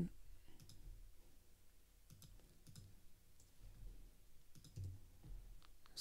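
A few faint computer mouse clicks at irregular intervals, pressing a web page's plus button to step a counter up.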